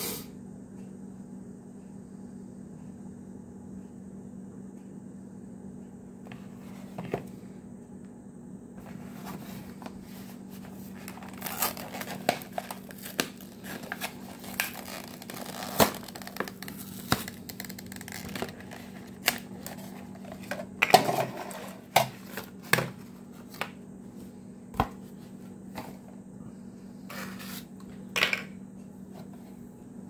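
Stiff clear plastic retail packaging crinkling and cracking as it is worked open by hand, in irregular sharp clicks and crackles that begin after several quiet seconds and come thickest about two-thirds of the way through.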